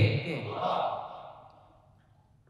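A man's breathy sigh into the lectern microphone, right after the end of a spoken word. It is an airy exhale without voice that fades away over about a second.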